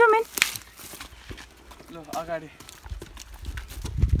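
Footsteps crunching and clicking along a garden path as people walk, broken by two short voice calls: one at the very start and one about two seconds in. A low rumble comes in near the end.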